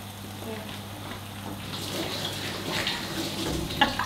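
Kitchen tap running, a steady hiss of water that starts about halfway through.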